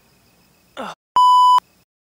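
A loud, steady electronic censor bleep lasting about half a second, starting and stopping abruptly, just after a short spoken "Oh".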